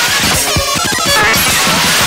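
Dense, noisy live-coded electronic music from TidalCycles: a clatter of many short percussive hits mixed with brief pitched blips, loud and unbroken.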